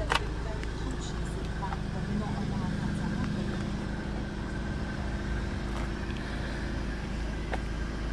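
Volkswagen Golf R's engine idling steadily, with one sharp click just after the start.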